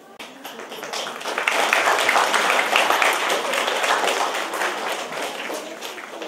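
Audience applauding: many hands clapping, building over the first second or two and tapering off toward the end.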